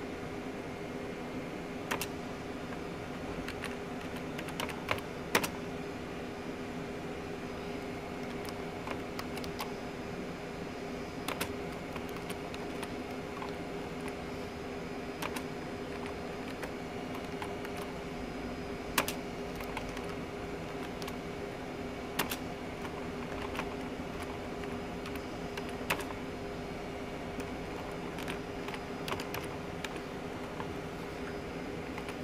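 Slow hunt-and-peck typing on a backlit computer keyboard: single key clicks, irregular and mostly a second or more apart, over a steady low hum.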